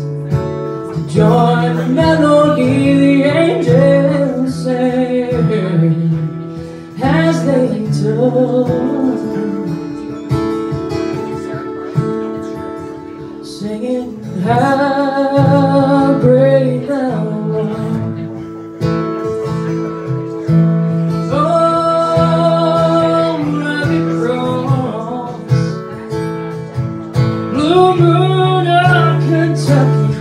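Live acoustic band music: strummed acoustic guitar under a singing voice that comes in several wavering phrases.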